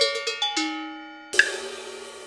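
Metal percussion struck in a quick run of sharp strokes, each ringing on at its own pitch. About a second and a half in comes one louder strike with a bright, hissing wash that rings on and slowly fades.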